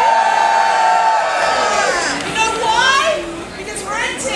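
A woman's voice holds one long, high call for about two seconds, then drops away into a few quick spoken syllables, with audience noise underneath.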